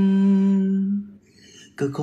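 Unaccompanied male voice singing, holding one steady note that fades out about a second in; after a short quiet gap the next sung line begins near the end.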